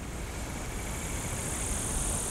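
Steady low rumble of an engine running in the background, with insects buzzing in a high, even drone that grows louder in the second half.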